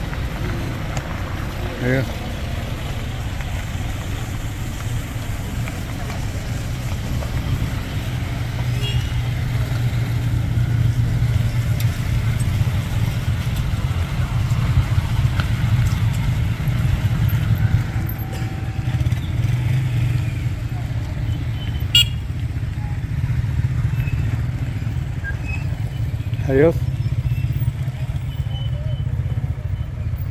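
Motorcycle engines running steadily as a line of motorcycles and pickup trucks rides slowly past on a dirt road. Brief voices call out about two seconds in and again near the end.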